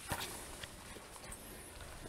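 Footsteps of hikers on a dirt and rock trail: a few light, irregular scuffs and knocks.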